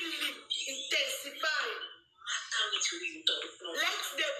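A woman talking in a high, lively voice through the audio of a screen-recorded phone live stream, with a short break about two seconds in.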